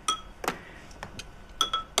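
A metal spoon clinking against a ceramic bowl while stirring porridge: about six light, irregular clinks, some ringing briefly.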